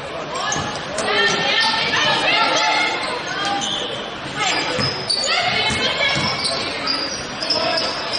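Live basketball game sound on a hardwood court: the ball bouncing as it is dribbled, with players and spectators calling out.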